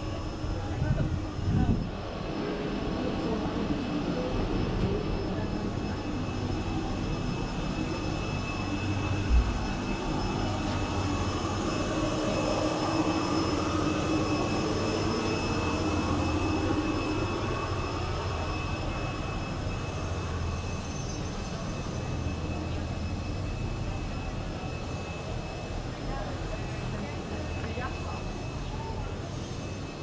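Steady outdoor rumble and hiss with faint voices in the background. It swells through the middle and eases off again, with a single low thump about nine seconds in.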